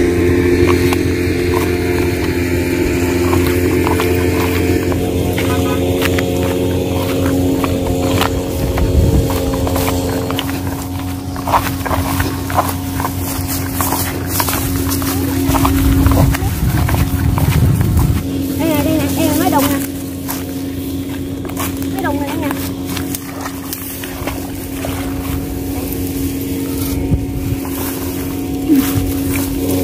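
Small engine of a motorized rice-sowing machine running at a steady drone, with a low rumble for a couple of seconds past the middle.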